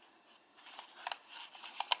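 Origami paper crackling and rustling under the fingers as its creases are pressed inward, with a few sharp crinkles about a second in and near the end.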